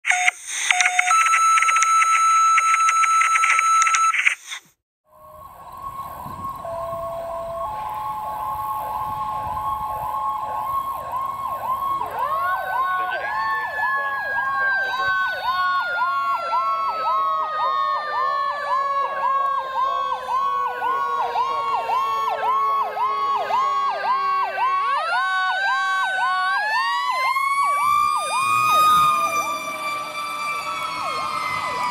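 A loud electronic intro sound fills the first four seconds. Then a fire engine's electronic siren sweeps rapidly up and down, a few times a second. About seven seconds later a Federal Q mechanical siren joins it: it winds up, slowly coasts down in pitch, then winds up again near the end.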